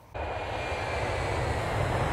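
A steady rushing, aircraft-like roar with a deep rumble underneath. It starts suddenly just after the start and swells slightly, a whoosh sound effect under the channel's logo animation.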